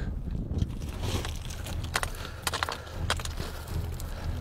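Loose scree rock crunching and clattering, a handful of sharp clicks over a steady low rumble.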